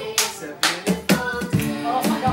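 A few sharp hand claps at an uneven pace in the first second, over acoustic guitar and group singing that carry on through.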